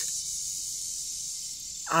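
Steady high-pitched chorus of crickets, an unbroken shrill hum.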